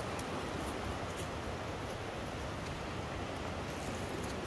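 Steady rushing of water from nearby cascades, an even noise with no let-up.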